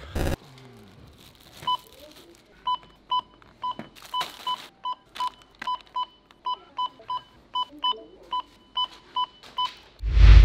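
Supermarket checkout barcode scanner beeping as grocery items are scanned: about twenty short, identical beeps, roughly two a second, starting a couple of seconds in and running until near the end.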